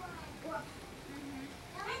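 Speech: a child's high-pitched voice and quieter talk, with the child's voice rising again near the end.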